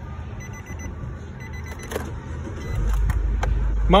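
2012 Nissan Versa's four-cylinder engine started from the driver's seat: a few clicks, then near the end the engine catches and settles into a steady low idle.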